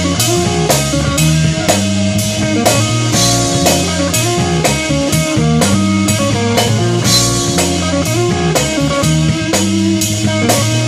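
Live instrumental rock/jazz-fusion trio of electric guitar, electric bass and drum kit playing, with a steady beat and a cymbal struck about twice a second.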